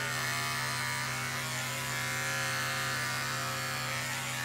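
Corded electric pet clippers buzzing steadily as they shave the fur from a dog's chest around a hot spot.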